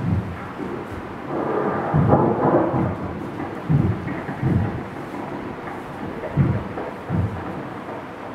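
Live percussion: about six deep drum strikes at uneven intervals over a low rumbling bed, with a louder rumbling swell about two seconds in.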